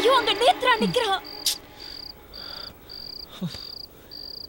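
Crickets chirping in an even rhythm, about two high chirps a second, as a night ambience. In the first second a brief wavering voice trails off, and a single sharp click comes about halfway through.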